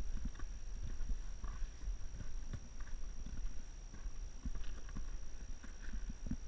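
Footsteps on rock and grit, irregular knocks under a low rumble of camera handling and wind.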